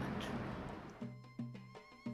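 Background noise fades away, and about a second in instrumental music starts with a few held notes.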